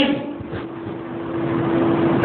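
A steady hum with an even hiss of background noise, no speech.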